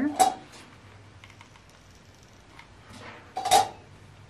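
Two sharp clacks of hard craft items being handled and set down on the cutting mat, one right at the start and a louder one about three and a half seconds in, with faint handling sounds between.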